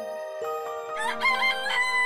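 Cartoon rooster crowing: a stepped cock-a-doodle-doo that starts about a second in and ends on a long held note, over a sustained music chord.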